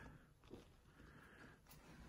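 Near silence: room tone, with a couple of faint soft ticks.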